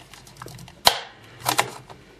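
A knife blade prying at the plastic memory-bay cover of an Asus 1015B netbook. There are two sharp plastic clicks, one a little under a second in and one about half a second later, with faint scraping between, as the stiff cover resists.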